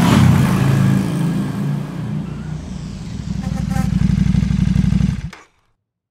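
Motorcycle engine running hard, easing off, then revving up again before cutting off abruptly about five seconds in.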